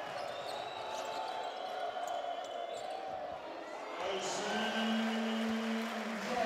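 Live arena sound of a basketball game: the ball dribbled on the hardwood court over a steady crowd din. A steady low tone joins in the last two seconds.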